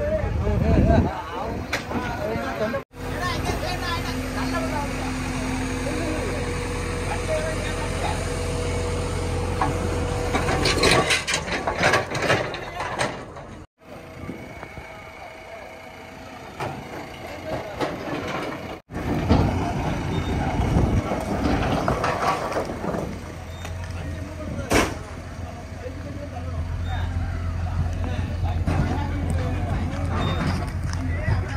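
Heavy diesel engine running steadily with a deep hum, with men talking over it. The sound drops out briefly three times.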